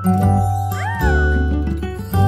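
Children's channel intro jingle: bright sustained music over a deep bass note. About a second in, a single short cartoon-like voice sound swoops up in pitch and falls back.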